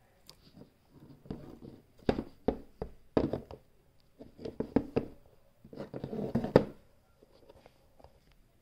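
Plastic Schleich horse figurines being moved by hand across a surface as if walking: a series of light, irregular taps and knocks of their hooves, with soft handling rustle in between.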